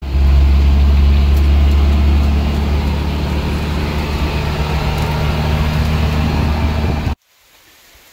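Loud, steady road and engine noise heard from inside the covered bed of a moving pickup truck: a heavy low drone under a broad rush of tyre and wind noise. It cuts off suddenly about seven seconds in.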